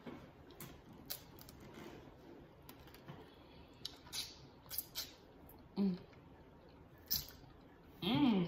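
Scattered sharp crunches and crackles of a tanghulu's hard sugar shell, wrapped in fruit roll-up, being bitten and chewed close to the microphone. A brief hummed "mm" comes about six seconds in.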